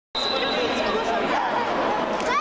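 Indistinct chatter of many voices echoing in a large sports hall, with a thin steady high tone running underneath, strongest at first.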